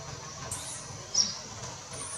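Baby monkey giving short, very high-pitched squealing cries: a faint falling one about half a second in and a louder, sharper one just after a second.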